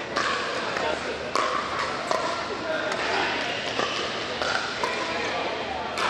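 Sharp pops of pickleball paddles striking a plastic ball, coming at irregular intervals from play on other courts in a large indoor hall. Indistinct chatter from players and onlookers runs underneath.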